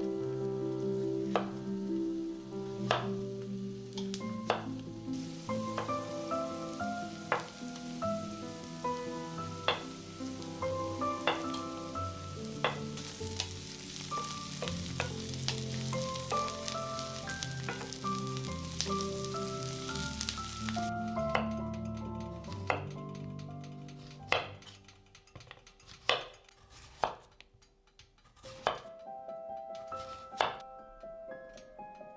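Diced onions sizzling in a frying pan and stirred with a wooden spatula, over soft background music. Knife strokes slicing zucchini on a wooden cutting board sound at the start and again near the end.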